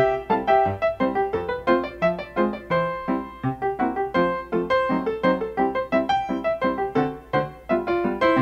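Background piano music, a steady run of notes at a lively pace.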